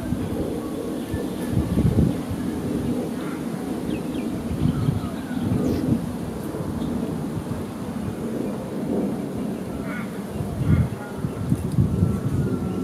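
Wind buffeting the microphone outdoors: a steady low rumble with stronger gusts about two seconds in and again near the end, with faint bird chirps above it.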